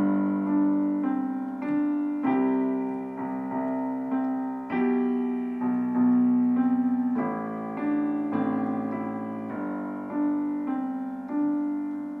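Williams digital piano played with both hands: a left-hand bass stepping down through C, B, A and G under a simple right-hand melody, notes struck in a steady rhythm and each fading before the next.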